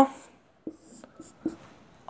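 Marker pen drawing on a whiteboard: about four short, faint strokes as lines are drawn on the board.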